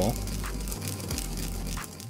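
Whole sesame seeds being ground with a wooden pestle in a ridged ceramic grinding bowl: a steady grinding, crushing the seeds about halfway into ground sesame.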